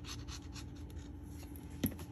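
Nozzle of a squeeze bottle of liquid glue scratching softly across cardstock as a line of glue is laid down, with a sharper click near the end.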